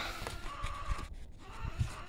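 Handling noise as a sheet of sandpaper and a rag are picked up and moved on a plastic tabletop: light rustling with a few soft knocks.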